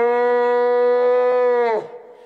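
A man's long held yell on one steady pitch for nearly two seconds, dropping away near the end.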